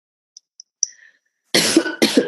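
A person coughing to clear the throat: a few faint clicks, then a loud cough about one and a half seconds in.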